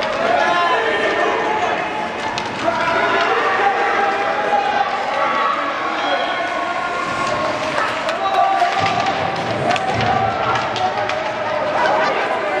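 Spectators' overlapping voices in an ice rink, chatting and calling out, with occasional sharp clacks of hockey sticks and puck.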